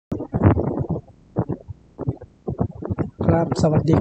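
A man speaking in short phrases with brief pauses, ending in a Thai greeting.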